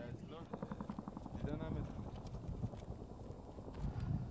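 Voices talking and calling, over a steady low background rumble.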